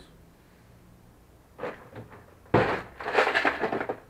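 Objects being handled and rummaged on a workbench: a couple of small knocks, then a sudden loud clatter and rustle about two and a half seconds in that keeps going.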